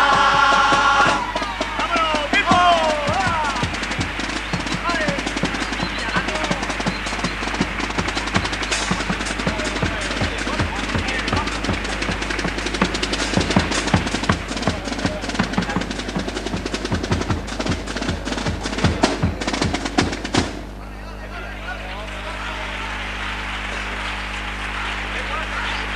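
A theatre audience applauding loudly with shouts, dense irregular clapping for about twenty seconds after the murga's song ends, then dropping suddenly to a quieter crowd murmur near the end.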